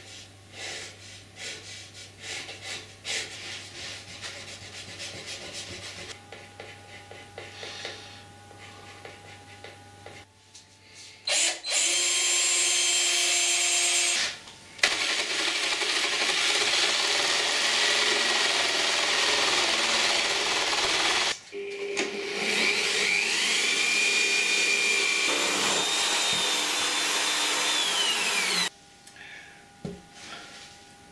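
Pencil scratching faintly across a wooden guitar top while marking out, then a handheld electric jigsaw cutting through the laminated hardwood top in three loud runs with short pauses between, its pitch rising early in the last run.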